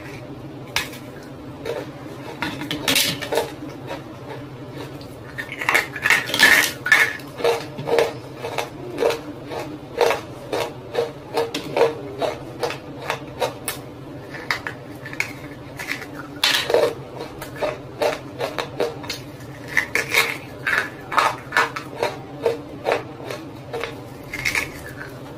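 Close-miked crunching and chewing of hard roasted clay lumps, sharp crackly crunches. They come sparsely at first, then at about two a second from about five seconds in, over a steady low hum.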